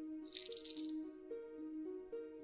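A small cat-collar bell jingles once, for about half a second, a little after the start. Soft background music with a slow, stepping melody plays under it.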